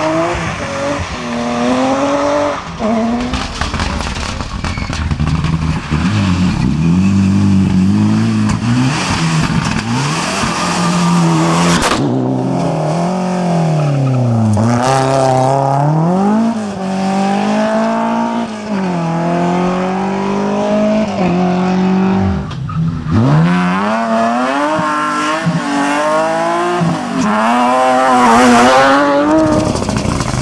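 BMW 3 Series rally cars (E36 and E30) driven flat out one after another, engines revving high with the pitch climbing and dropping again and again through the gear changes. The sound breaks between cars about 3, 12 and 23 seconds in.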